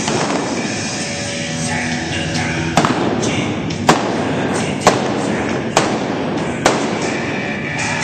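Five single-action revolver shots fired with blanks, about one a second, as a mounted shooter breaks balloon targets at a gallop, over steady background music.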